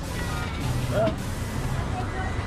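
A car engine running at idle, a low steady rumble, with background music and brief voices over it.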